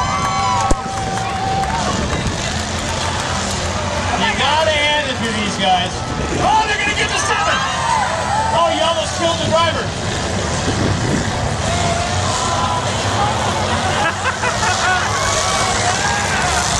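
Race car engines running on a dirt track, a steady low rumble, with crowd voices and indistinct talk over it.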